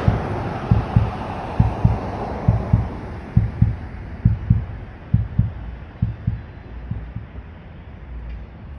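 Heartbeat sound effect: pairs of low thumps, about one beat a second, growing fainter toward the end over a dying hiss.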